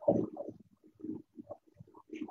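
Wooden spatula stirring a thick green pea paste in a pan as it is cooked down to dry it out: a string of short, irregular stirring sounds, loudest at the start.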